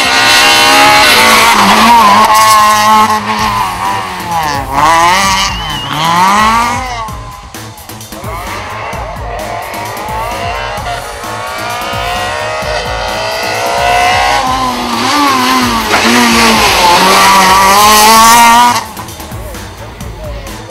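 Small Renault Twingo rally cars at full throttle on a stage, the engine pitch repeatedly climbing and dropping with gear changes and lifts for corners. The loudest passes come at the start and again about fifteen seconds in, and the sound cuts off suddenly near the end.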